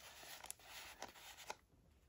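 Faint rustling of a handmade paper junk journal being handled: thick, aged paper pages and tucked cards rubbing under the fingers, with a few soft clicks. It dies down about a second and a half in.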